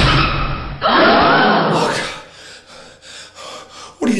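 A heavy thud sound effect as a man tumbles out of a wheelchair, followed by a drawn-out cry that rises and falls in pitch, then quieter gasping and breathing.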